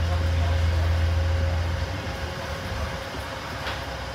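Double-decker bus heard from inside the passenger deck: a steady low engine drone that drops away about two seconds in, leaving a quieter rumble and a faint steady whine.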